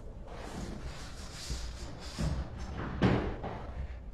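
A few dull thumps over a low rumble, the loudest about two seconds in and again about a second later.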